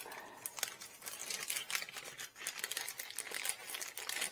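Clear plastic parts bag crinkling and rustling in the hands as red 3D-printed parts are taken out of it, with many small irregular crackles throughout.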